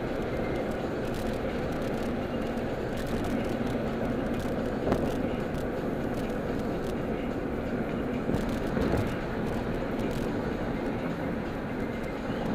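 Steady road and engine noise heard inside a moving car's cabin at cruising speed, with a few brief knocks or rattles, the sharpest about five seconds in.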